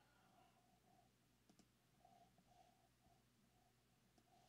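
Near silence: room tone with a couple of faint clicks about one and a half seconds in.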